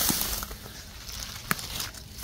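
Dry grass and weeds rustling and crackling as they are pushed through by hand, with a sharp click about a second and a half in.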